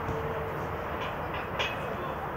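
Steady background noise from a floodlit outdoor football pitch, with a few short sharp sounds from play between about one and one and a half seconds in.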